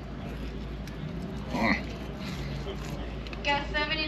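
A man's voice, first a short murmur about one and a half seconds in, then a drawn-out sung note starting near the end, over a low steady rumble of outdoor background noise.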